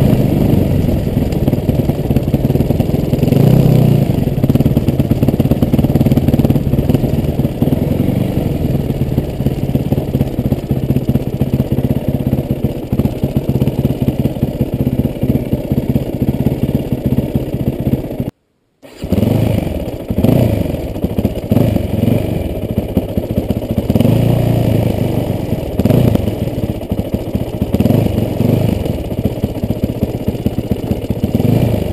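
Yamaha WR450F's single-cylinder four-stroke engine running under way on a dirt bike, its revs rising and falling with the throttle. The sound cuts out completely for about half a second a little past the middle.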